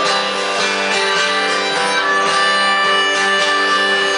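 Live acoustic guitar strummed steadily under a harmonica playing long held notes.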